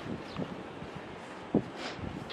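Outdoor background noise with wind on the microphone, and a single dull thump about one and a half seconds in.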